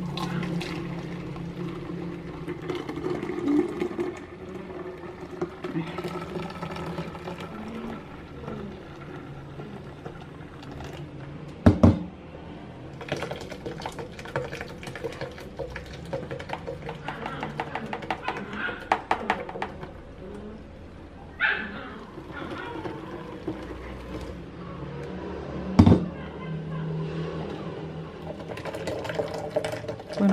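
Soft background music over blended passion fruit juice being poured and strained through a plastic mesh strainer into a plastic pitcher. Two sharp knocks stand out, about twelve and twenty-six seconds in.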